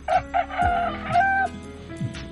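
A rooster crowing once: two short opening notes, then a long drawn-out note that lifts in pitch near its end, about a second and a half in all. Background music with a steady beat plays underneath.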